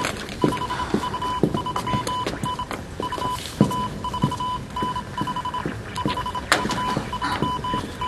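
Morse code radio telegraph signal: a high beep keyed on and off in dots and dashes, with scattered clicks and knocks underneath.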